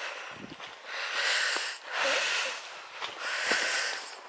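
A walker breathing hard, a hissing breath about every second, with soft footsteps on a leaf-covered, muddy woodland path.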